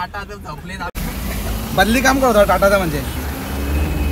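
Talking inside a moving car's cabin over a steady low road-and-engine rumble, with an abrupt edit cut about a second in.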